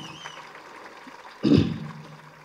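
A pause in a man's speech over a public-address microphone, leaving faint room hum. About one and a half seconds in comes one short vocal sound from the speaker.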